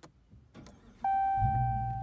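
Dodge Challenger started with its push-button ignition: a click, then the engine catches about a second and a half in and settles into a low, steady idle rumble. A steady high tone comes on just before the engine catches.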